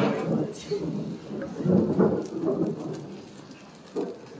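Indistinct voices and shuffling of a roomful of people settling into silence, dying away over the last second or so. A single sharp knock comes right at the end.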